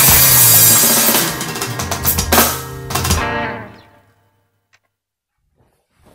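Rock band playing the closing bars of a song: electronic drum kit, bass guitar, hollow-body electric guitar and keyboard, with final drum hits about two and three seconds in. The last chord rings out and dies away by about four seconds.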